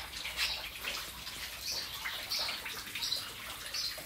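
Garden water feature trickling and splashing, with small irregular splashes a few times a second.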